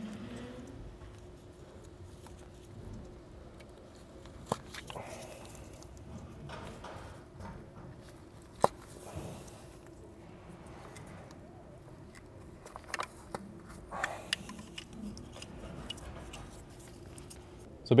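Plastic ignition coil wiring connectors on a VW 1.8T engine being pressed and pulled off by hand, giving scattered light clicks and handling rattles, with one sharper click a little under halfway through and a small flurry of clicks about three quarters in. A steady faint hum runs underneath.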